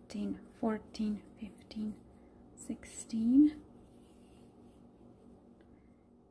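A woman's quiet, half-whispered voice: short single words at a steady pace for about two seconds, then one louder word with a rising pitch about three seconds in, and low room sound for the rest. The pace fits counting chain stitches under her breath.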